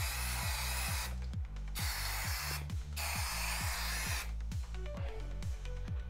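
Aerosol spray can of alcohol-based stain-blocking primer hissing in three bursts, the last ending about four seconds in, over background music with a steady beat.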